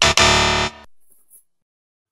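Short game-show sound effect: one loud musical tone, rich in overtones, that starts abruptly and lasts under a second before trailing off.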